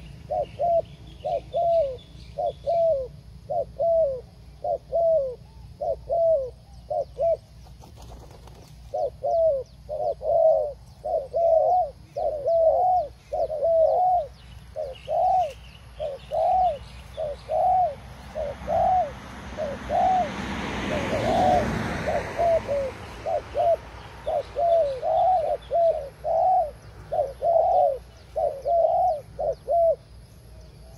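Spotted dove cooing over and over: a quick run of low coo notes, each rising and falling, about two to three a second, with a short break about eight seconds in. A rushing noise swells and fades near the middle, and small birds chirp faintly.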